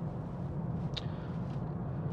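Steady low drone inside the cabin of a BMW X5 30d on the move, the tyre and engine noise of the car being driven, with a single short click about a second in.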